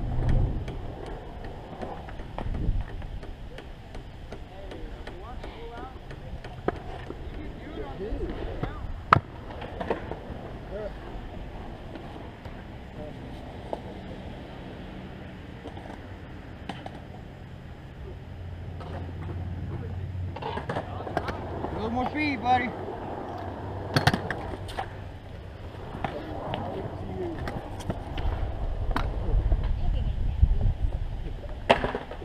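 Skatepark ambience: distant voices with occasional sharp clacks of skateboards on concrete, the loudest about nine seconds in and again about twenty-four seconds in.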